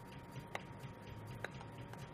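Two faint, sharp clicks, about half a second in and again about a second later, over a quiet room with a faint steady high tone.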